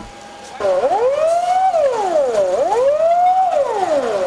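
Fire engine siren wailing, its pitch rising and falling in a cycle just under two seconds long; it cuts in suddenly about half a second in, after a brief quieter hiss.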